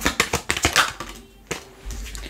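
Tarot cards being shuffled and handled: a quick run of crisp flicks and clicks in the first second, then a card snapped down onto the wooden desk.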